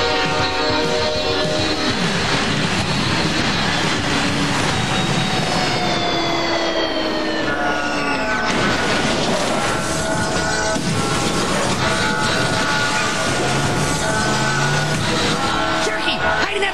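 Cartoon soundtrack: music score mixed over a rushing cartoon train sound effect. There are several falling glides in pitch in the middle, and held musical notes through the second half.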